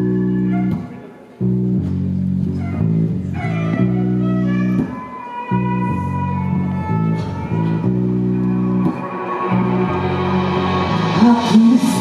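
Live band music: a deep bass line in held notes with two short breaks, lighter tones above it, and a voice coming in near the end.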